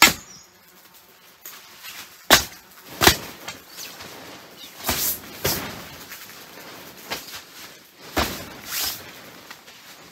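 Horseflies being swatted against a tent's fabric ceiling: about seven sharp slaps on the taut fabric, spaced irregularly.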